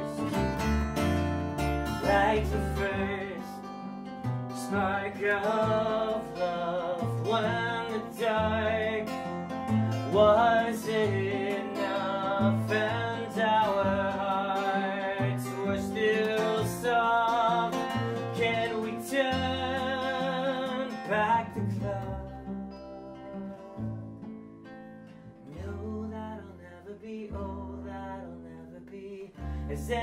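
Live acoustic folk song: a steel-string acoustic guitar and an upright double bass play while a man sings. About two-thirds of the way through, the singing drops out and the guitar and bass carry on more quietly.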